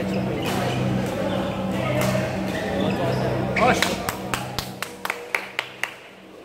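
Badminton hall ambience: many voices chattering over a steady low hum. About halfway through comes a short squeak, then a quick run of sharp clicks, several a second, from rackets striking shuttlecocks across the courts.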